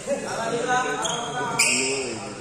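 People talking in a badminton hall between rallies, with a brief high squeak about one and a half seconds in from a sports shoe on the court floor.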